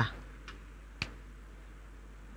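A pause in speech: quiet room tone with a low steady hum, a faint click about half a second in and a sharper single click about a second in.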